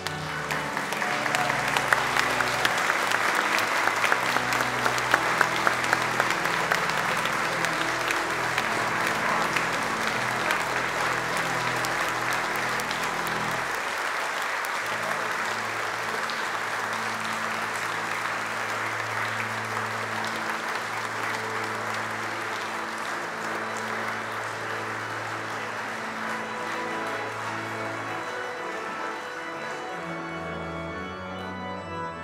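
Congregation applauding, with a pipe organ holding sustained chords underneath. The clapping starts just after the beginning, is loudest over the first several seconds, and eases a little toward the end.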